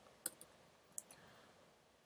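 Two faint computer-keyboard key clicks, about three quarters of a second apart: the g key pressed twice, the vim "gg" command that jumps the cursor to the top of the file.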